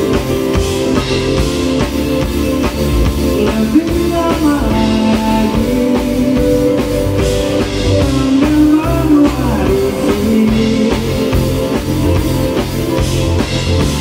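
A live band playing a song: drum kit and electric guitar with keyboards, and a melody line that slides in pitch in the middle.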